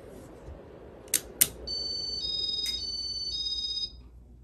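Casablanca Spirit of Saturn ceiling fan running with a low whoosh. About a second in come two sharp clicks, then an electronic beep that alternates between two pitches for about two seconds and cuts off suddenly near the end.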